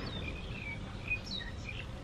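Birds chirping: several short, high calls, some falling in pitch, over a steady low background noise.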